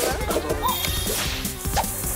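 Cartoon background music with a fast swishing whoosh sound effect over it.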